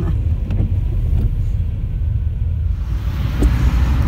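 Car cabin road noise while driving on a wet road: a steady low rumble of engine and tyres, with a tyre hiss growing near the end.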